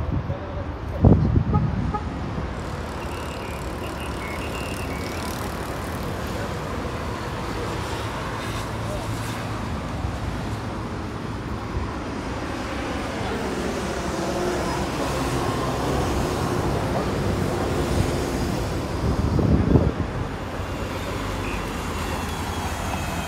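Steady city road traffic with voices in the background, and two louder low rumbling bursts, about a second in and near the end.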